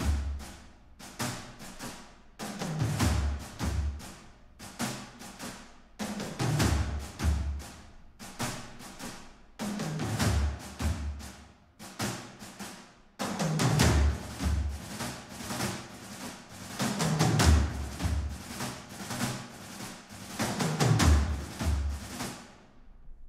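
Sampled orchestral percussion played back from a film-score mockup: timpani reinforcing the bass under layered snares, brushes, buckets and toms in a driving rhythm. Pairs of deep low hits come about every three and a half seconds beneath a busy patter of snare strokes.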